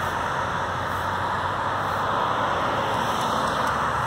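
Steady road traffic noise from cars passing on a divided road.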